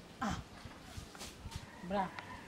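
A short spoken exclamation, "ah", falling in pitch, then a quiet stretch with a few faint clicks, and a brief voiced sound just before the end.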